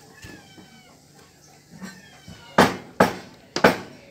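Faint high, wavering calls in the first half, then four sharp knocks from about halfway, the first the loudest and the last two close together.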